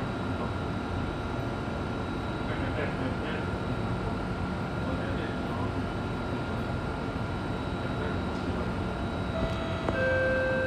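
Steady hum inside a stationary Alstom Metropolis C830 metro train standing with its doors open, with a thin steady high tone over it. Near the end, new steady electronic tones start: the door-closing warning beginning.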